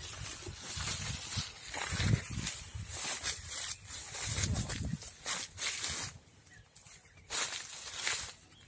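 Footsteps crunching irregularly on dry fallen leaves, with rustling, as someone walks through an orchard; quieter for a moment after about six seconds.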